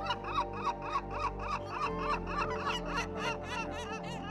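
Yellow-legged gulls calling: a fast run of short, repeated calls, about five a second, as both birds call with their beaks open. Background music runs underneath.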